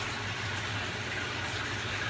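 Pumped water running steadily out of a PVC outlet tube into an aquaponics grow bed of expanded clay pellets.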